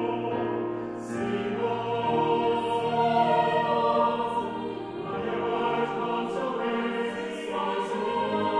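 Mixed choir singing in sustained, shifting chords, with crisp 's' consonants flashing out together several times.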